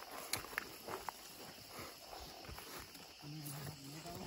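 Faint footsteps and rustling of feet and legs pushing through grass and shrubs, with a few light snaps in the first second. Near the end a person hums one steady note.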